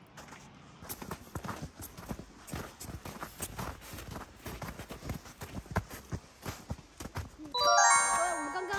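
Footsteps in snow: snow boots crunching up a packed-snow path and steps, about three steps a second, getting louder. Near the end, a bright chiming jingle of quick rising notes comes in suddenly and is the loudest sound.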